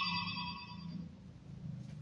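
Electronic sound effect from a DX Gotcha Igniter transformation toy's speaker: several steady high tones fading out over about the first second, leaving a faint low hum.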